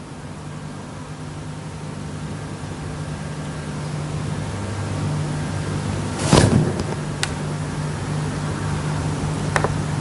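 Steady low room hum that slowly grows louder, with one short dull thump about six seconds in and a couple of sharp clicks near the end.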